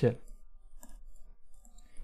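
A few faint, light ticks and scrapes of a stylus writing on a tablet screen, just after the end of a spoken word.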